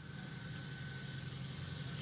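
Faint, steady low hum of an idling vehicle engine in the outdoor background, with a faint thin steady tone above it.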